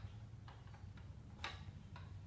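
A few faint clicks and taps from a toddler's plastic push-along walker, the sharpest about one and a half seconds in.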